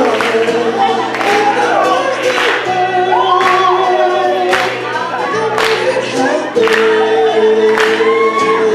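Live acoustic guitar strummed with a sharp accent about once a second, under singing voices holding and bending notes into microphones.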